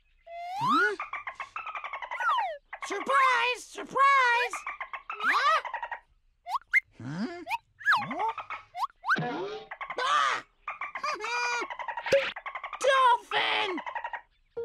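Cartoon parrot character's voice in wordless, pitch-sliding squawks and exclamations, in short bursts with gaps between. There is a sharp crack near the end as the surprise egg breaks open.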